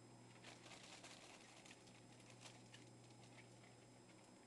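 Very faint rustling and light pattering of guinea pigs moving about on fleece bedding strewn with hay, busiest in the first half, over a steady low hum.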